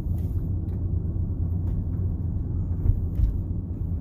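Steady low road rumble inside a Tesla's cabin as it drives at about 20 mph, with a few faint scattered ticks.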